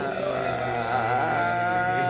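A man's voice drawn out in one long sung-out note that wavers about midway, then holds steady until it fades just after the end.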